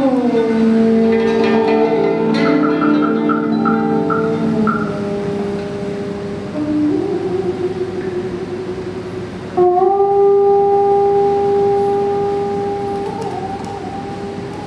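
Đàn bầu (Vietnamese monochord) playing slow, sustained notes whose pitch bends: a slide down at the start, a step up about seven seconds in, a fresh plucked note about ten seconds in that bends slightly upward, and a wavering bend near the end.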